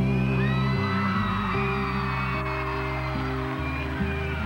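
Live acoustic-guitar ballad playing held chords that change every second or two, with audience members whooping over the music.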